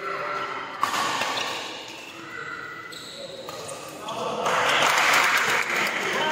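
Badminton racket strokes on a shuttlecock during a doubles rally, a sharp hit about a second in and more around three seconds, followed by loud shouting from players and spectators from about four and a half seconds as the rally ends.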